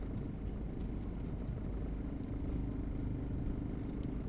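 Low, steady outdoor rumble with a distant motorbike engine running. A faint steady hum joins about halfway through.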